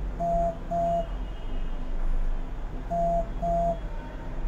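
An electronic tone beeping in pairs: two short beeps, a pause of about two seconds, then two more near the end. A low steady hum runs beneath.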